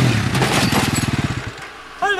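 A sport quad's engine running with fast, even firing pulses, fading away over the second half.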